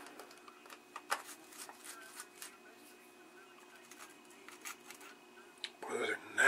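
Screwdriver backing a small corroded screw out of a metal cable-socket housing: faint, scattered clicks and scrapes, the sharpest about a second in.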